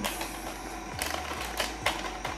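A small plastic vitamin packet crinkling as it is handled: a few short crackles, the last ones near the end.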